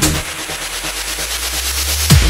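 Breakdown in an electronic dance track: the kick drum drops out, leaving a held low bass note under a noise sweep that slowly grows louder.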